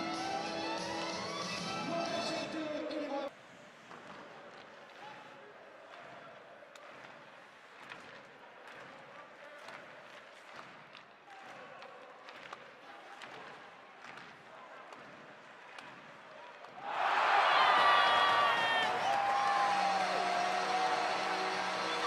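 Arena music that cuts off about three seconds in, then live ice hockey sound: a low arena hubbub with sharp knocks of sticks and puck. About seventeen seconds in, as a goal is scored, a sudden loud burst of arena noise and music.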